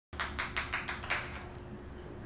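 A light plastic ball, like a ping-pong ball, bouncing on a ceramic tile floor: about six quick, light clicks in the first second, then it goes quiet.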